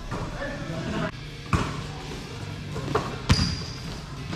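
Basketball hitting the hard floor of a large indoor gym: two sharp thuds, about a second and a half in and again after three seconds, echoing in the hall.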